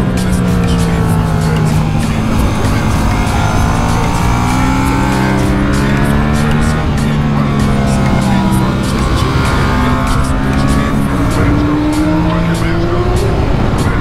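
Yamaha MT-07 parallel-twin engine under hard riding, revs rising and falling through several gear changes, with a long climb in pitch in the second half, over steady wind noise.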